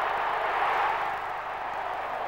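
Large stadium crowd cheering in a steady roar that slowly fades.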